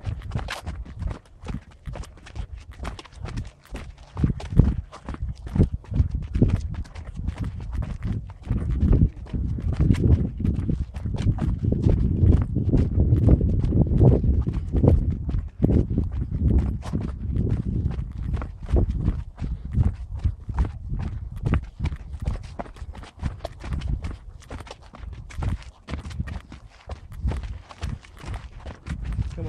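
Quick, irregular footfalls of people running down steep steps laid on old railway ties, the filmer's own strides close to the microphone. A heavier low rumble swells in the middle, from about 8 to 16 seconds.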